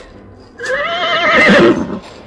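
A horse whinnying once as a radio-drama sound effect, starting about half a second in: a call of just over a second that wavers quickly in pitch, rises and then falls away.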